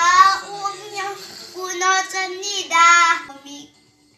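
A young child singing a short phrase of long held notes, which stops about three and a half seconds in.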